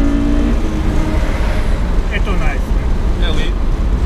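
Honda S2000's 2.0-litre F20C four-cylinder engine, fitted with aftermarket headers, heard from inside the open car at speed: a steady engine note that falls away about half a second in, leaving loud road and wind noise.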